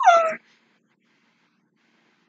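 A woman's brief high-pitched squeal of delight, falling in pitch and over in under half a second.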